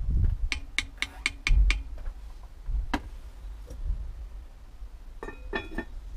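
A metal spoon clinking against a stainless steel cooking pot, about six ringing knocks in quick succession followed by one more a second later. Near the end the lid is set on the pot with a short cluster of clinks.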